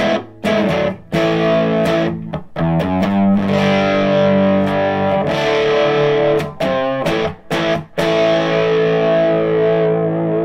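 Gibson Les Paul electric guitar played through an 18-watt Reinhardt MI-6 amp's normal channel at volume seven with the power scaling all the way down: a crunchy, overdriven rock tone at low volume. Chords are rung out and held, choked off short several times, with a wavering held note near the end.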